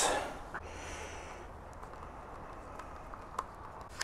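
Faint handling sounds at a foam model-glider wing: a few light clicks and taps over low room noise.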